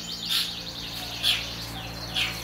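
Caged domestic canaries singing, a string of high chirps and down-sweeping notes, over a steady low hum.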